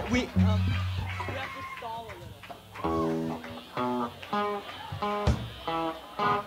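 Electric guitar played live in short, separate notes with pauses between them, on a lo-fi bootleg tape. A low bass note is held at the start, voices are underneath, and there is a sharp hit about five seconds in.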